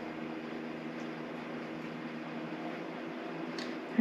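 Steady electric hum of a small motor or fan, made of several fixed low tones, with a faint tick about a second in and another just before the end.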